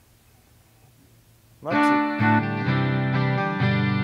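Reverend Airwave 12-string electric guitar strummed through a Mesa TC-50 amp. After a near-silent pause, ringing chords start a little under two seconds in, with low bass notes moving underneath.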